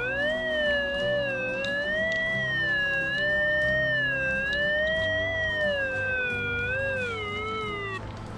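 Golden Mask Deep Hunter Mobile pulse-induction metal detector giving a continuous target tone whose pitch slides up and down as the coil is swept over a brass medal buried about 55–60 cm deep. The unbroken tone means the detector clearly sees the medal at that depth. The pitch dips near the end and the tone then stops.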